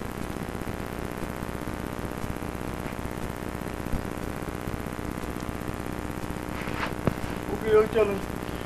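Open telephone line on hold, with a steady hum and hiss. There is a faint click about four seconds in and another near the end. A faint voice comes through in the background near the end.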